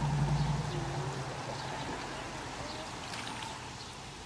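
A shallow creek running steadily, with water splashing and pouring as a plastic container of tadpoles is tipped out into it, loudest in the first second or so.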